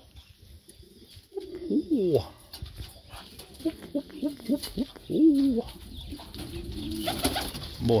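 Domestic pigeons cooing: a run of low, gliding coos repeated over several seconds. A brief rustling noise comes near the end.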